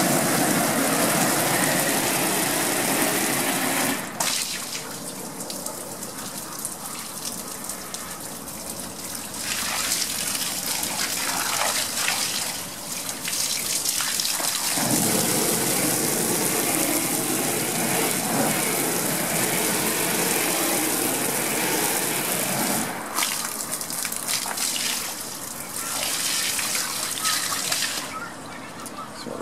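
Garden hose spraying water onto a vinyl projection screen: a continuous hiss and splash, loud for the first few seconds, quieter for a while, then loud again through the middle before easing off near the end.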